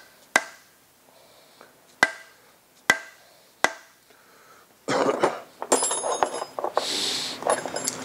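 Four hammer blows, about a second apart, tapping a Ford Model T flywheel down onto the crankshaft, where it goes on tight; each strike rings briefly. From about five seconds in there is an irregular metallic clatter of tools being rummaged in a tool tray.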